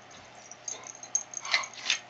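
Pit bull sniffing at close range: a few short, breathy puffs in the second half, after a quiet start.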